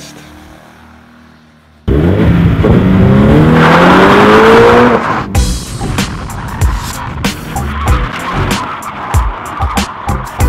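About two seconds in, a car engine starts revving hard, its pitch rising steadily for about three seconds as the car slides on dirt. From about five seconds in, music with sharp, repeated hits takes over.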